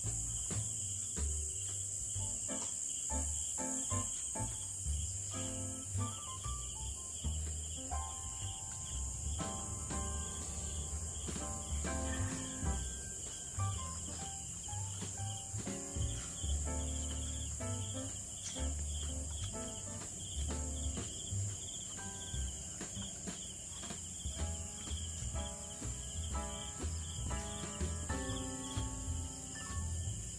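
Crickets and other night insects chirping in a steady high-pitched chorus, with a quiet instrumental melody of slow, held notes. Irregular low thumps sound underneath.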